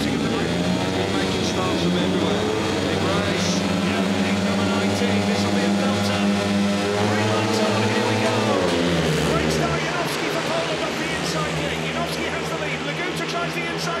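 Several 500cc single-cylinder speedway bike engines revving at the start gate, then racing away from the tapes into the first bend. The note holds steady, then drops sharply about eight and a half seconds in, and several engines can be heard at different pitches after that.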